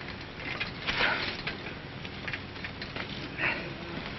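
Steady hiss of an old 1930s optical film soundtrack, with a few faint clicks and a short soft burst near the end.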